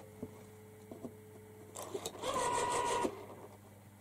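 Landline telephone being tried out after a repair: a faint steady dial tone for the first couple of seconds, then a brief whirring, rasping noise lasting about a second, with a steady tone inside it.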